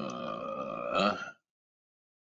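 A garbled, buzzy electronic sound lasting about a second and a half, peaking near the end and cutting off abruptly into dead silence. It is typical of audio breaking up over a failing web-conference connection.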